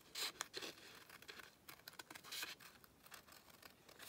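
Scissors cutting printed paper: a few faint, short snips, with light rustling of the paper sheet as it is turned.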